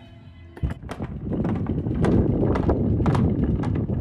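Loud rushing noise with many irregular knocks and clicks on a sailing catamaran's deck. It starts about half a second in and is loud from about two seconds on.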